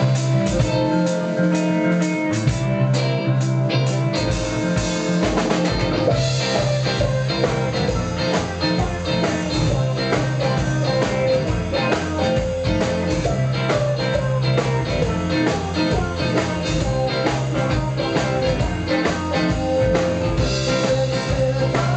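Live band playing an instrumental passage on electric guitars and drum kit; the drumming becomes a dense, steady beat about six seconds in.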